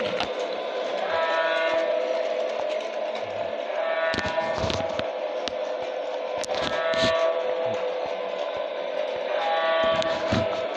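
Battery-powered toy passenger train running around a plastic track loop, its motor giving a steady hum with scattered clicks from the wheels on the track. A short horn sounds about every three seconds, four times.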